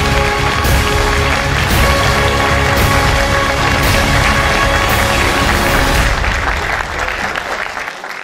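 Music with a heavy, steady beat of about one stroke a second, with applause under it, fading out near the end.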